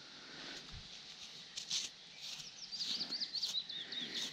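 A songbird singing a fast, high, warbling phrase through the second half. Faint scratchy rustles come from gloved hands rubbing soil off a dug-up metal buckle.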